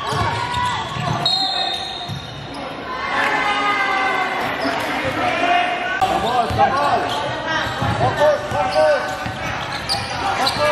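A basketball being dribbled on a wooden gym floor, bouncing repeatedly in a large echoing hall, with players and bench voices calling out.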